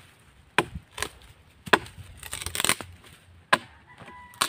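Bolo knife (sundang) chopping: about five sharp, irregularly spaced strikes, with a short stretch of crackling dry brush a little past the middle.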